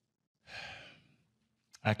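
A man's breathy sigh, an exhale of about half a second, before he begins a hesitant answer; his voice starts right at the end.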